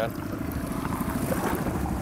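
Outboard motor running steadily at trolling speed, a low, even rumble, with wind on the microphone.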